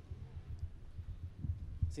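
Handheld microphone handling noise: a faint low rumble with a few soft, irregular thumps as the live microphone is lowered and set down.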